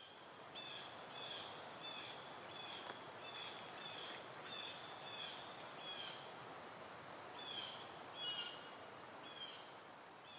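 A bird chirping repeatedly, short notes about two a second with a brief pause in the middle, over a faint, steady hiss of outdoor background noise.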